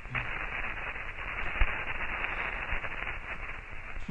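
Sonified accelerometer data from the Mars rover Opportunity: a steady hiss like white noise laced with fine crackling, with one sharper click about a second and a half in. In this soundtrack the hiss marks the rover rolling over sand and the crackles its jolts over rocky ground.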